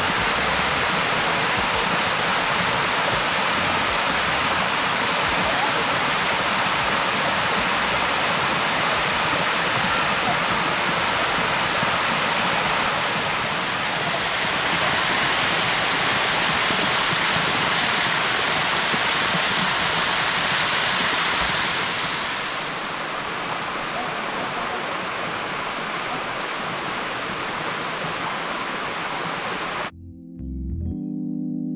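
Water cascading over a rock in a small river waterfall, heard close up as a steady rushing splash. It becomes a little quieter about three-quarters of the way through.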